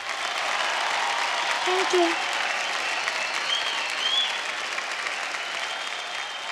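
Studio audience applauding steadily after a song, with a few voices calling out over the clapping.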